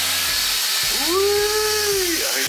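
Henry tub vacuum cleaner running with its hose on a length of electrical conduit, a steady rushing hiss as it sucks a string through. About halfway through, a gliding tone rises, holds for most of a second and falls away.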